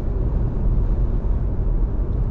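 Steady low rumble of engine and tyre noise heard inside a moving car's cabin as it picks up speed on an open road.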